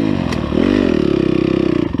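Dirt bike engine pulling along a trail under throttle. Its pitch dips about half a second in, then climbs and holds high, and falls off sharply near the end.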